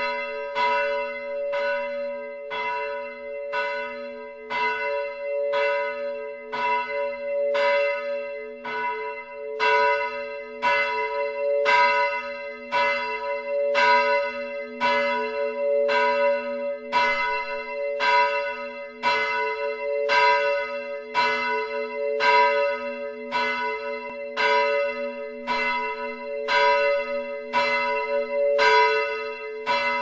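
A single swinging church bell ringing close up, its clapper striking steadily about three times every two seconds. The strokes alternate slightly louder and softer, and the tones hang on between strikes.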